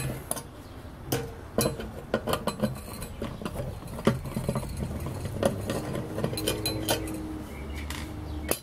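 Scattered small metallic clicks and clinks as a screwdriver works the Phillips screws out of a thermal wire stripper and its metal parts are handled. A faint steady hum comes in for a moment around the middle.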